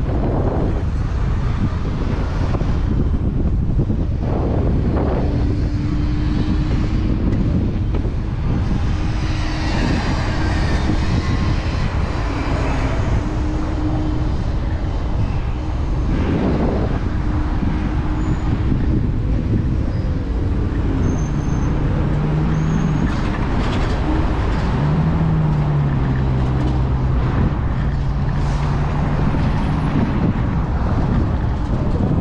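City street traffic heard from a moving ride, with a constant low wind rumble on the microphone. Engines hum steadily, and a lower hum sets in about two-thirds of the way through.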